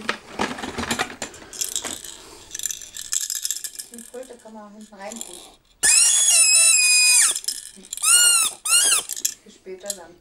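Plastic baby toy trumpet: rattling as it is handled, then blown, with one loud, steady, high toot lasting about a second and a half just past the middle, and two shorter toots that bend up and down in pitch near the end.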